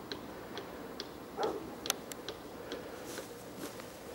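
Light ticking: a regular run of short, sharp clicks, about two a second, with a brief low sound about a second and a half in.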